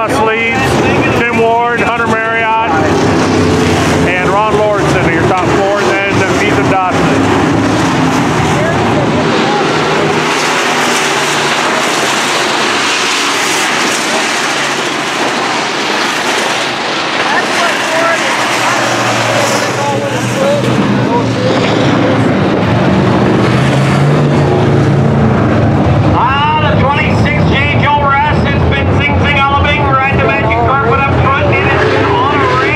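A field of IMCA Modified dirt-track race cars with V8 engines running hard around the oval, a loud, steady engine noise that swells and eases as the pack comes past and moves away. A man's voice, the track announcer, is heard over it in the first few seconds and again near the end.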